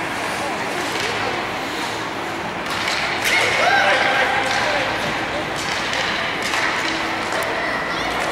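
Ice hockey game in an indoor rink: spectators' voices and calls, with scattered clacks of sticks and puck and skate noise on the ice, echoing in the arena.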